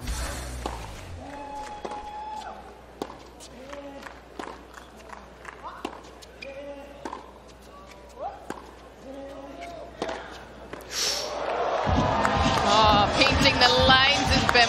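Tennis ball being struck by racquets and bouncing on a hard court, a string of sharp separate hits over a quiet crowd. About twelve seconds in, loud crowd voices and music come in.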